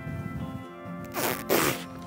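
Background music with steady held notes. About a second in comes a short, breathy rush of air, a sharp exhale.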